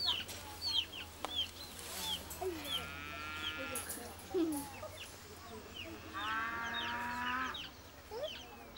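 Farmyard chickens: high falling chirps about twice a second, a few low clucks, and two drawn-out calls lasting over a second each.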